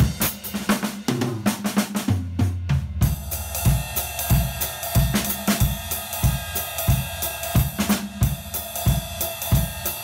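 Acoustic drum kit played solo. Dense hits across drums and cymbals give way, about two seconds in, to a short run of lower drum hits. From about three seconds a steady beat of bass drum and snare plays under a ringing Zildjian cymbal struck with a stick.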